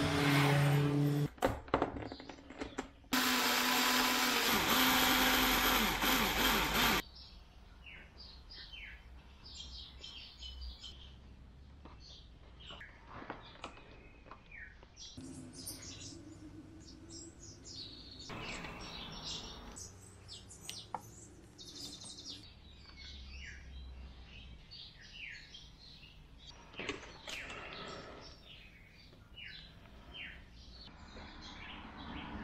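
A loud, steady machine whir runs for about four seconds and cuts off suddenly. After it come faint clicks and taps of hands working a hot glue gun on a foam model wing, with faint bird chirps.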